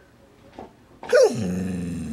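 A dog vocalizing about a second in: a single call that starts high, drops steeply in pitch and settles into a low, steady growl for about a second.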